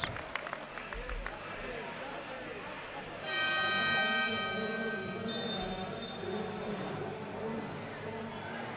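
Sports-hall scoreboard horn sounding once for about two seconds, starting about three seconds in, over the murmur of the crowd during a stoppage in a basketball game; it marks a substitution.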